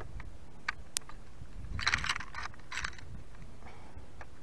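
Handling noise as a caught largemouth bass is hung up to be weighed: a few sharp clicks about a second in, then a short run of rattling and scraping around the middle.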